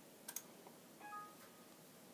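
Two quick mouse clicks, then about a second later a short, faint computer alert chime of a few stepped tones, over quiet room tone.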